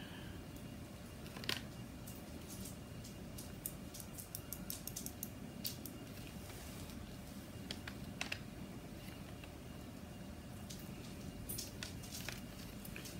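Faint, scattered light clicks and ticks from a small hand tool being handled at a tabletop, over a steady low room hum.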